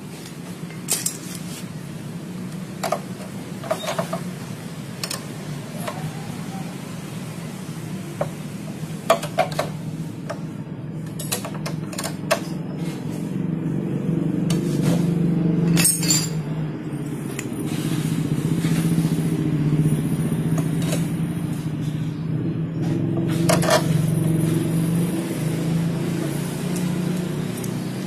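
Steel hand tools clinking against motorcycle front-brake parts: scattered sharp metal clicks and taps as a long wrench works the front axle nut and the disc-brake caliper bracket. Under them is a steady low hum that grows louder from about the middle on.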